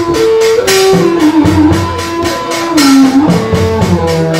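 Vietnamese funeral music (nhạc hiếu) played by a traditional ensemble: a held melody line that slides between notes over a regular beat of drum and percussion strokes, with a louder crash about every two seconds.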